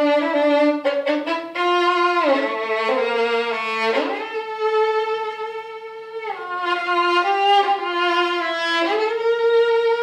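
Solo violin bowed on a gold-wound Pirastro Evah Pirazzi Gold G string, playing a slow melody of held notes with slides between them.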